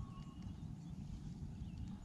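A spinning fishing reel being wound slowly to retrieve a soft-plastic lure, a soft, low, uneven rumble.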